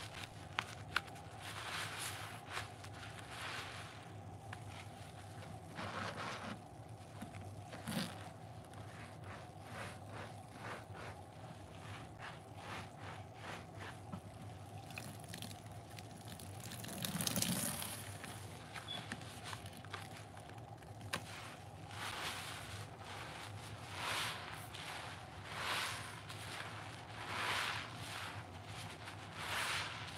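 Soapy sponges, a green smiley-face scrub sponge and round yellow sponges, squeezed in gloved hands over a bucket of sudsy water. Each squeeze gives a wet squelch of foam and water, repeating every second or two.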